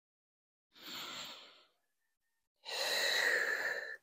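A woman breathing audibly through a yoga movement: a soft breath about a second in, then a longer, louder breath let out as a sigh from about two and a half seconds in.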